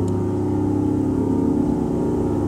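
Eurorack modular synthesizer sounding a sustained drone of several steady tones over a strong low hum, with a brief click near the start.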